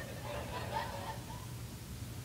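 Quiet church-hall room tone with a steady low hum, and a faint, distant voice from the congregation from about half a second in to about a second and a half in.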